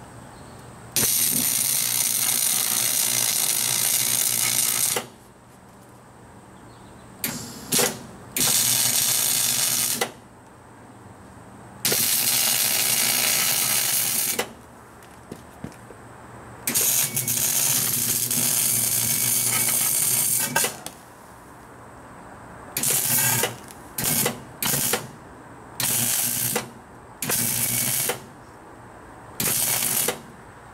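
Electric arc welding: a run of welds, each a crackling hiss lasting a few seconds with short pauses between, then quicker short tacks near the end. The welds are tacking a broken locking-pin piece back on.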